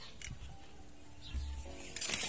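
Faint background music, with a short click and a low thump from pruning shears being worked on a rubber-plant stem.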